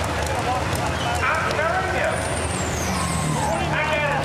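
Pulling truck's supercharged engine idling with a steady low drone while hooked to the sled, under a background of voices.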